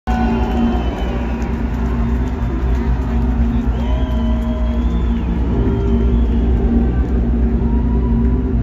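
Loud live-concert sound from the stage: a steady low rumble with held droning tones and a few slow pitch glides over it.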